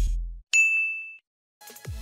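Background music stops, then a single bright ding sound effect rings for under a second. After a short silence, a low falling sweep leads back into music near the end.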